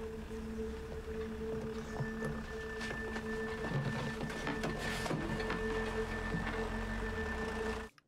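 Sustained low drone from a TV drama's score, two steady low tones held with a faint high tone and scattered faint clicks over them; it cuts off suddenly just before the end.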